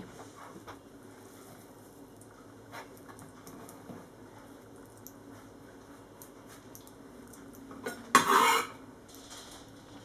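Hands scooping and brushing chopped sauerkraut off a wooden chopping board into a glass bowl: faint soft handling noise with a few light taps, then a brief, louder scrape about eight seconds in.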